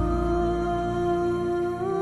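Slow background music of long held notes, stepping up in pitch once near the end.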